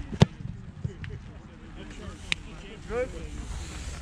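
American football placekick: the kicker's foot strikes the ball off the holder's hold with one sharp, loud thud about a quarter second in. A fainter click follows about two seconds later.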